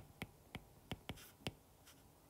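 A stylus tip tapping and sliding on a tablet's glass screen while writing by hand: five or six faint, sharp taps spaced irregularly.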